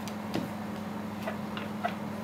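A few faint, unevenly spaced clicks as a tarot card is handled and laid on a glass tabletop, over a steady low hum.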